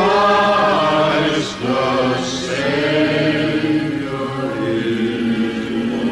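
Christmas song playing: voices singing long held, wordless-sounding notes over backing music, with a rising swoop right at the start.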